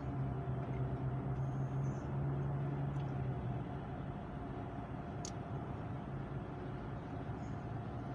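Steady road noise inside a moving car's cabin, tyres and engine running at highway speed. A low hum sits under it and drops away about three and a half seconds in.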